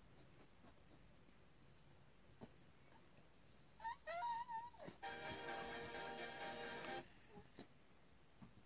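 Staffordshire bull terrier whining: short, wavering high-pitched notes about four seconds in, then a steadier whine of about two seconds that cuts off suddenly.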